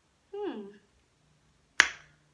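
A woman's short voiced sound falling in pitch, then a single sharp snap near the end.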